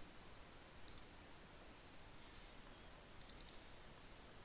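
Near silence broken by faint computer mouse clicks: a pair about a second in and a quick run of three or four near the end.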